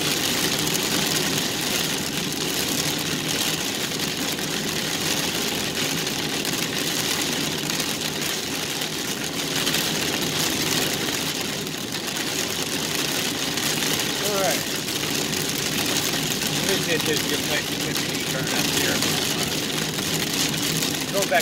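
Heavy rain beating on a moving vehicle and tyres hissing on a wet road, heard from inside the cab over the steady hum of the engine.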